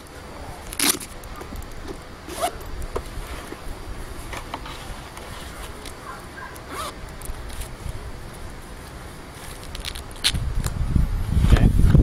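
Handling noises as a boot and plastic shin armor are worked onto a leg: rustling and scraping with scattered sharp clicks, growing louder in the last couple of seconds.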